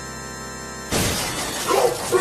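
A held electronic keyboard chord is broken about a second in by a sudden loud crash-and-shatter sound effect. Near the end a voice starts, its pitch sliding up and down.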